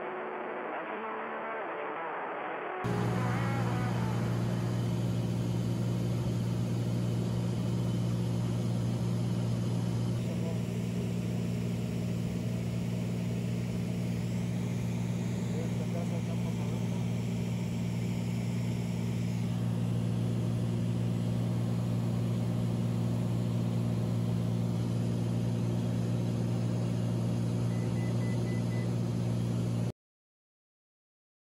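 Steady low drone of the Cessna Turbo 206 Stationair's piston engine and propeller, heard inside the cabin, coming in about three seconds in after a quieter, thinner stretch of headset audio.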